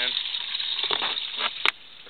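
Water from the pond pump's hose pouring into a plastic trash-can biofilter, a steady hissing splash. A sharp click comes about one and a half seconds in, and after it the water sound drops much quieter.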